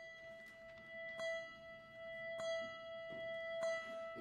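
One long, steady note on an instrument, held without change, with several light knocks over it.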